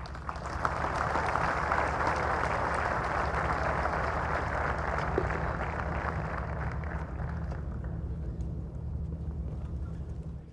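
A large crowd applauding, building over the first second, holding steady and thinning towards the end, over a steady low hum.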